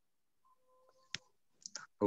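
Near silence, broken by one sharp click just over a second in, then a couple of faint short ticks near the end.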